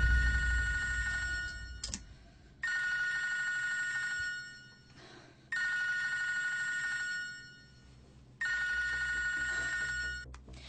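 Telephone ringing four times. Each ring is a steady, high two-tone ring lasting nearly two seconds, with about a second of quiet between rings. Low background music fades out during the first ring.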